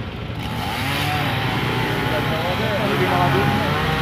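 Background chatter of several people talking, not close to the microphone, over a steady low hum.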